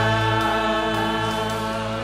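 Live worship band with singers, electric guitars, bass, drums and keyboard holding one long sustained chord, the voices drawn out on a held note.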